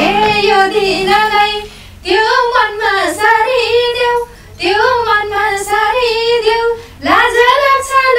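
A woman singing a Nepali dohori folk verse in a high voice, in four phrases with short breaks between them. The instrumental backing is faint.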